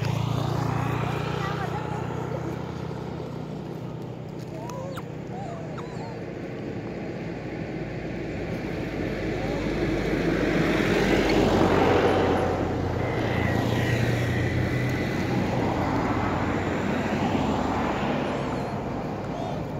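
Engine noise from a passing motor vehicle over a steady low hum, swelling to its loudest about two-thirds of the way through and rising again near the end. Faint short squeaky calls come in the first few seconds.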